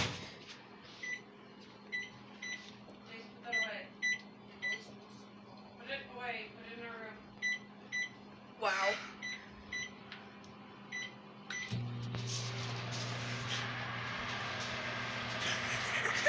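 Amana microwave oven keypad beeping with a short beep at each button press, then, about three-quarters of the way through, the oven starting up and running with a steady low hum and fan noise.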